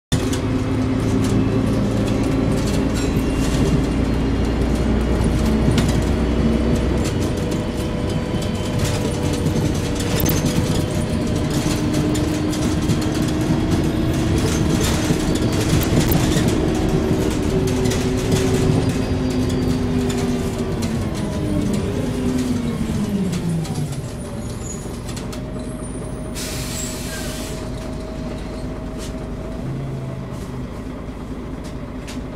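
Volvo Olympian double-decker bus heard from inside the lower deck, its engine running under way, then falling in pitch as the bus slows and settling to idle. A short hiss of air from the brakes follows near the end.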